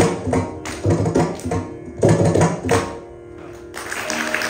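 Mridangam strokes over veena in Carnatic music in raga Shankarabharanam, adi tala. The drum plays clusters of quick strokes that thin out and grow quieter near the end.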